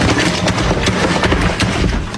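Loud, dense crackling and rustling of a phone's microphone being handled and covered as the phone is moved, rapid and irregular with no clear pitch.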